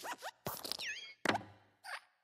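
Pixar logo sound effects for the Luxo Jr. desk lamp hopping on the letter I. A quick run of springy clicks and squeaky pitch glides is followed by a heavier thump about a second and a quarter in as the lamp squashes the letter.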